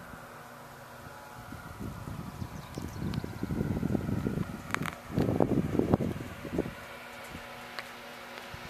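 Gusty wind noise on a handheld microphone over a faint steady hum. It swells in the middle and is loudest a little past halfway, with a few sharp clicks of handling.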